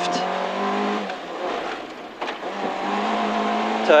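Peugeot 205 GTi 1.9's four-cylinder engine running hard at speed, heard from inside the cabin. About a second in, the engine note drops away for a little over a second, with a single sharp click in the middle, then comes back steady.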